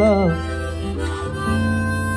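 Harmonica playing a fill of held notes over an acoustic guitar accompaniment.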